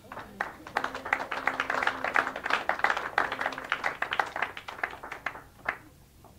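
Applause from a small audience: many separate hand claps that thin out and stop shortly before the end.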